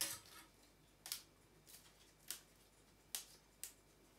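A metal spoon clicking and scraping against a metal mixing bowl while a mixture is scooped out: about six short, sharp clicks spread out, the first the loudest.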